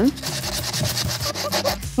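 Sandpaper rubbed quickly back and forth over the edge of an opening cut in a thin PVC pipe, smoothing the rough knife cut, with quiet background music underneath.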